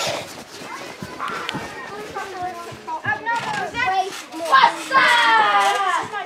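Children's voices at play, calling and shouting over one another with no clear words, louder in the second half and ending in one long held call.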